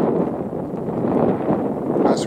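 Wind buffeting the microphone, a steady noise with no tone in it.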